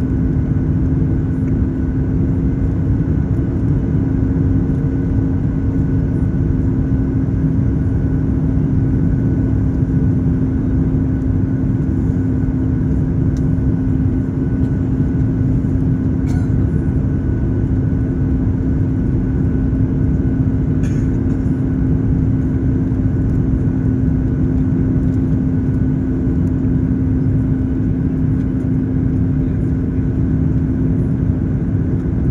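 Aircraft cabin noise during descent to landing: a loud, even rush of engine and airflow noise with a steady low hum through it.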